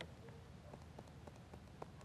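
Near silence, with a few faint, short ticks scattered through it.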